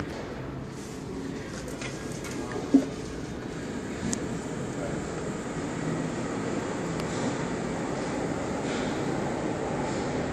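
Tower crane cab noise: a steady mechanical rumble and hum as the crane runs and swings, growing slightly louder. A sharp click comes about three seconds in and a smaller one a second later.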